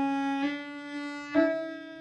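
Cello played with the bow: a sustained note, then a left-hand shift to a slightly higher note about one and a half seconds in, held on.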